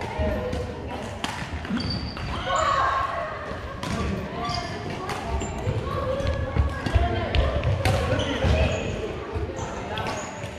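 Badminton rally on a hardwood gym floor: repeated sharp racket strikes on the shuttlecock mixed with footfalls and short high sneaker squeaks, echoing in a large hall.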